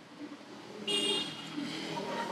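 A vehicle going by, with a short horn toot about a second in.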